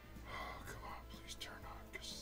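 A person whispering, with quiet background music underneath.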